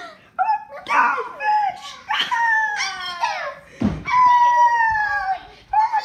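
High-pitched wailing: a run of short cries that fall in pitch, then a long held wail from about four seconds in that slowly sinks before breaking off, with another starting at the end.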